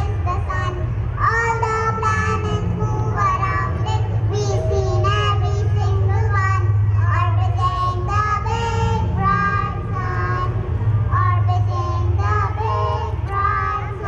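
A child's voice singing a song about the planets, with held and sliding notes, over a steady low hum.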